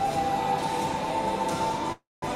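A male singer holding one long high note that rises slightly, over backing music. The sound cuts out abruptly at the very end.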